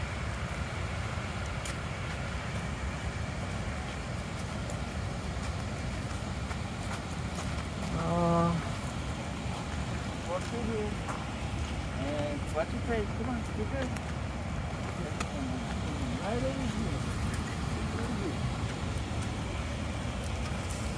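Steady rush of water running over a dam. A brief voice sound comes about eight seconds in, and faint voices follow.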